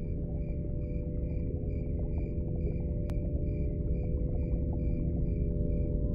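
Ambient intro soundtrack: a steady low drone of held tones, with a high cricket-like chirp repeating evenly about twice a second. A single sharp click comes about three seconds in.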